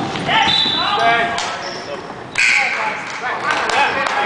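Basketball game in an echoing gym: players shouting and a basketball bouncing on the court floor, with a short high squeak about half a second in.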